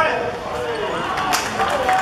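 Voices calling and shouting on an open-air football pitch during play. In the second half come a few sharp knocks, the loudest about a second and a third in.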